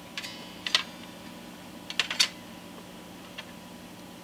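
A few light clicks and ticks, two in the first second and two more about two seconds in, some with a brief high metallic ring: a small steel rule being set against and moved along the strings of a 12-string electric guitar to measure string action.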